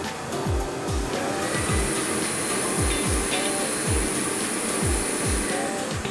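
Air-mix lottery draw machine blowing the balls around its clear globe, a steady rush of air, under background music with a regular thudding beat.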